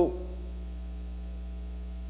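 Steady electrical mains hum in the sound system's feed: a low, unchanging hum with a few fainter higher overtones.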